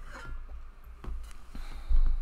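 Handling noise as a large porcelain doll is lifted off a desk beside the microphone: low bumps and knocks with some rustling, the heaviest thump near the end.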